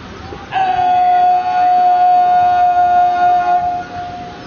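A parade commander's long, drawn-out shouted word of command, held on one steady pitch for about three seconds. It starts about half a second in and tails off just before the end.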